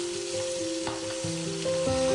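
Chicken leg quarters sizzling as they fry in oil in a pan, with background music of held notes playing over it.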